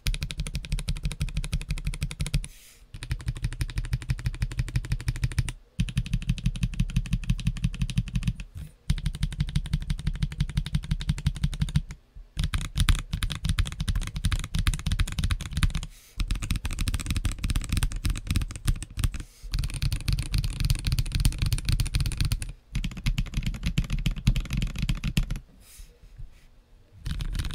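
Fast typing on a CIY GAS67 3-Mode wireless gasket-mount mechanical keyboard with KTT Matcha switches and Taro PBT Cherry-profile keycaps. A dense run of key clacks comes in stretches of about three seconds, each broken by a brief pause.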